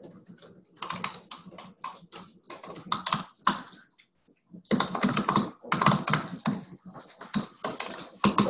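Typing on a computer keyboard: quick runs of keystrokes, a pause of about a second just before halfway, then a faster, denser run of keys.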